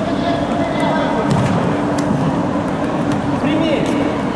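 Voices talking and calling out during a futsal game, with a few short sharp knocks of the ball being kicked.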